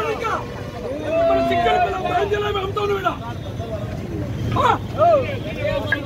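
Several voices talking over one another amid crowd chatter, with a steady low hum beneath.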